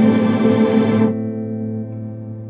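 Electric guitar played through the SoundSketch digital pedal's spectral reverb effect: a held chord in a dense reverb wash. About a second in, the brighter upper tones fall away, leaving lower notes ringing on.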